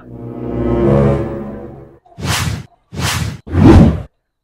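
Edited-in comedy sound-effect sting: a swelling chord of steady tones that peaks about a second in and fades away by two seconds, followed by three short whooshes.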